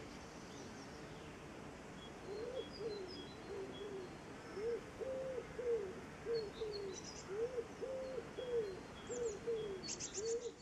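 Birdsong: a bird coos in low, soft, arched notes that begin a couple of seconds in and repeat in phrases of about four, over faint high chirps from small birds and a steady background hiss.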